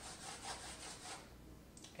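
Chalk scraping across a blackboard in a quick run of short strokes, stopping a little over a second in.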